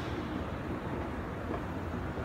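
Steady room tone of a large indoor hall: a low, even hum with a faint hiss and no distinct events.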